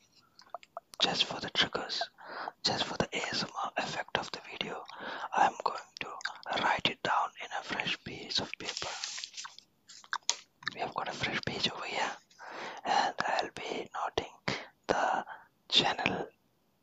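Close-up whispering into the microphone, too soft for the words to be made out. It comes in bursts with short pauses.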